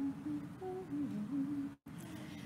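A single voice humming softly, a few low notes stepping up and down, with the sound cutting out for an instant near the end.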